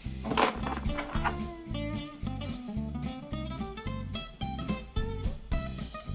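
Background music: a melody of plucked notes, guitar-like, played in a steady run.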